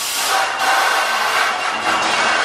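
Steady, loud rushing of air blowers driving the foam-ball machines of an indoor play area.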